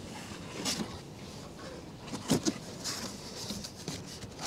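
A cardboard box being opened by hand: the lid and flaps scrape and rustle in a few short strokes, the loudest just past the middle.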